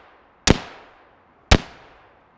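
Two rifle shots about a second apart, each with a fading echo: a Colt AR-15A2 firing 5.56 NATO 62-grain steel-core penetrator rounds, the last shots of a 25-round string into a car's engine compartment.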